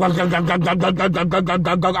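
A man imitating an idling diesel truck engine with his voice: one continuous buzzing vocal drone with a regular pulse, which stops abruptly after about two seconds.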